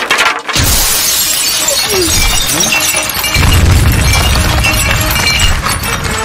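Glass shattering: a sudden loud crash about half a second in, then a long spray of breaking and tinkling shards, as a body is thrown through a glass window. A low rumble joins about three and a half seconds in.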